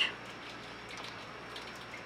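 Quiet room background with a few faint, light ticks.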